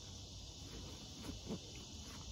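Faint rustling and handling of a nylon sleeping bag being pushed into its stuff sack, with a few soft short noises, over a steady high background hum of insects.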